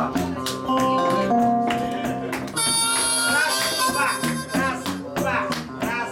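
Electric guitar playing a blues riff of plucked notes. About two and a half seconds in, a harmonica played from a neck rack joins with a bright held note for over a second.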